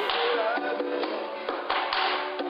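Acoustic guitar playing short picked notes in an informal jam, with sharp taps of a drumstick on a snare drum, most of them in the second half.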